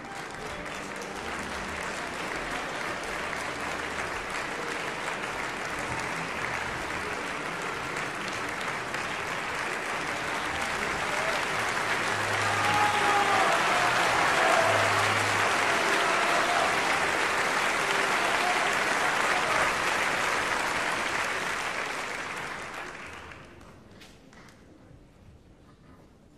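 Opera house audience applauding. It builds up to its loudest around the middle, then dies away near the end.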